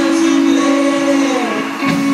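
Live rock band playing with electric guitars, bass and drums, a chord held steady through the moment, heard from the audience.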